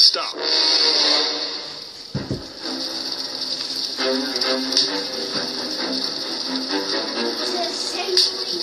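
Loud upbeat music cuts off abruptly, leaving quieter background music mixed with voices, like a television or radio playing in the room. There is a single low thud about two seconds in.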